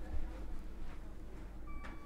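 Quiet room with a low steady hum and a few faint rustles and soft movement sounds as someone steps away.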